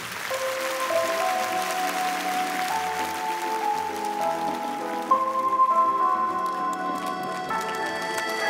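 Live stage band playing the slow instrumental introduction to a ballad: sustained notes step through a gentle melody. A soft hiss under the music fades over the first few seconds.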